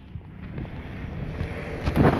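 Low rumble of wind buffeting the microphone, building toward the end, with a sharp knock near the end.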